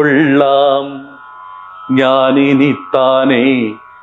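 A voice singing lines of a Malayalam poem to a Carnatic-style melody over a steady drone, in three phrases with short pauses between them.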